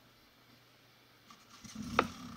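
Near silence, then near the end an off-road motorcycle engine starts up with a low pulsing note, and a single sharp click comes right at the end.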